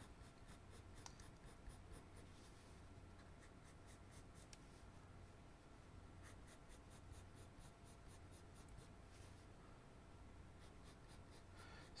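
Black Col-Erase coloured pencil scratching on paper in runs of quick, short vertical hatching strokes, faint.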